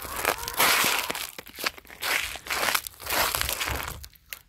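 Snow crunching in several irregular bursts, like feet or hands pressing into packed snow.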